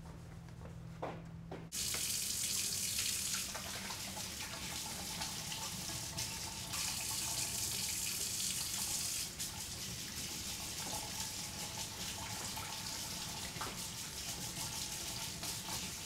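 Kitchen faucet running water into a sink holding dishes, a steady splashing hiss that starts suddenly about two seconds in and swells and eases as the flow hits the dishes.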